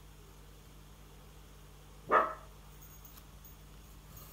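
Quiet room tone, broken about two seconds in by one short, loud voiced call lasting a fraction of a second.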